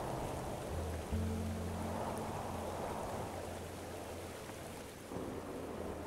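A rushing mountain stream under soft background music; low held music notes come in about a second in and fade away near the end.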